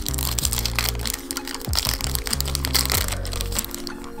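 Foil booster pack wrapper crinkling and crackling as it is torn open and the cards are slid out, over background music with a steady low bass line.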